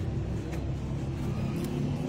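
Steady low engine rumble, with a few faint clicks.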